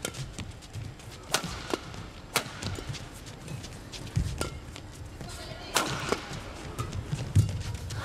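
Badminton rally: rackets striking a shuttlecock, a series of sharp cracks at irregular gaps of about half a second to a second and a half, with low thuds of players' footwork on the court between them.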